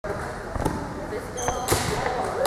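Volleyball players' voices in a large sports hall, with several sharp smacks of ball or hand impacts, the loudest near the end.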